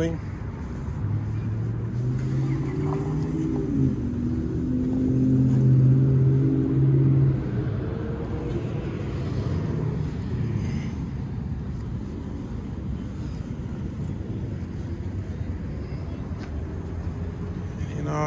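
A motor vehicle's engine hum building as it drives by on the street, loudest about six seconds in, then dropping off sharply and leaving steady low traffic noise.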